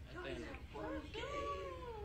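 A girl's faint whimpering while she strains in a wall sit: a few short whimpers, then one long whine that rises and falls, starting about halfway through.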